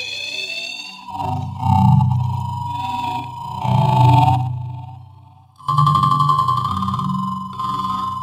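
Sound-design preset on Reaktor's Metaphysical Function synthesizer, built from a sample of dialogue processed with Reaktor's Travelizer ensemble. It plays as layered eerie drones: a low hum, a steady tone near 1 kHz and high gliding tones. It fades away about five seconds in and starts again with a new tone a moment later.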